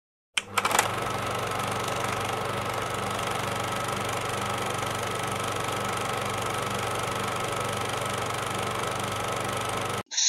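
A machine running with a steady mechanical hum, opening with a few quick clicks as it starts.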